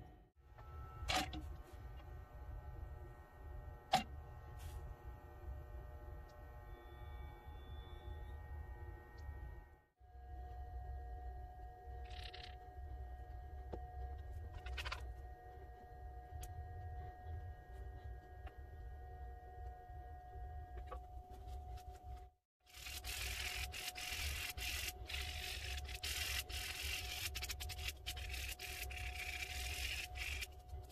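A steady background hum with a few sharp clicks, then, about three-quarters of the way in, sandpaper rubbing over a cast-resin fishing lure blank in quick scratchy strokes, the loudest sound here.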